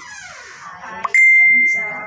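A single high, bell-like ding about a second in: one clear ringing note that starts sharply and fades away over about a second, the loudest sound here.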